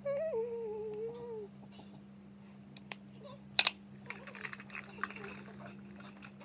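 A girl sings a short wordless 'ooh', her pitch dropping and then holding for about a second and a half. Then come a few sharp clicks, the loudest about three and a half seconds in, and soft rustling, over a steady low hum.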